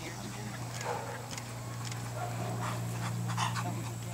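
Rottweiler panting as it is gaited on lead, over a steady low hum.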